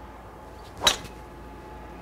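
A golf driver striking a ball off a tee: one sharp crack about a second in, with a brief ring after it.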